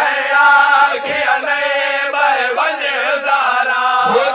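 A man chanting a noha, a Shia mourning lament, into a microphone in long held melodic lines that waver in pitch.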